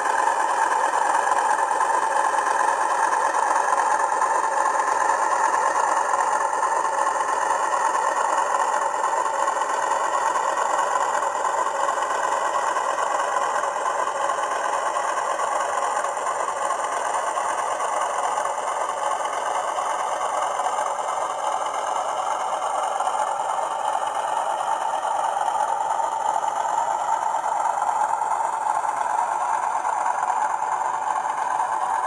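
OO gauge model Class 40 diesel locomotive running along the layout hauling a rake of model sliding-wall vans. A steady running sound whose pitch drifts slowly.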